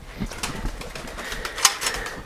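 Roller pigeons stirring in their loft cage, with a brief cluster of sharp rustles about three-quarters of the way through.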